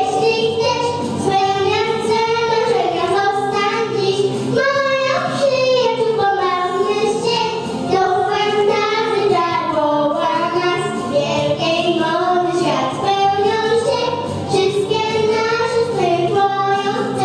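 Two young girls singing a duet into handheld microphones, their voices amplified through a sound system.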